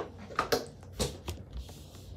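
Hands and fingertips knocking and tapping on a wooden tabletop close to the microphone: about five sharp taps in the first second and a half, then a brief soft hiss near the end.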